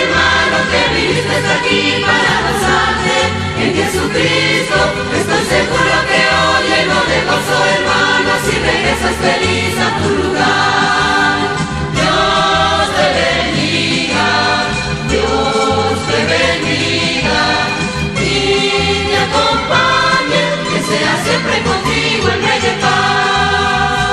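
Christian hymn sung by a vocal group in several voices over instrumental accompaniment, in long held phrases over a steady beat.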